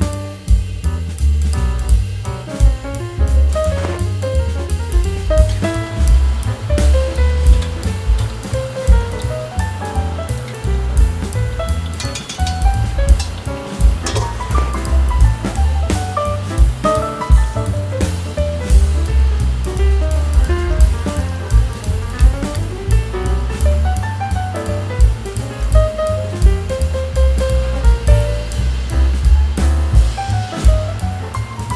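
Background music: a jazzy tune with a drum kit keeping a steady beat under a bass line and a melody.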